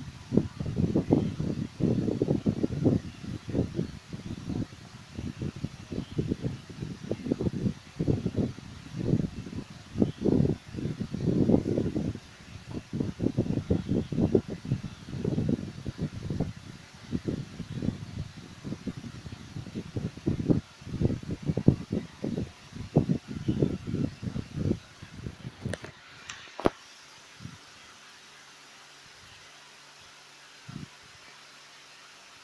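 Irregular low rumbles and bumps of handling noise on a hand-held phone's microphone, while a makeup brush is worked over the cheek. The noise stops with a click near the end, and it goes much quieter after that.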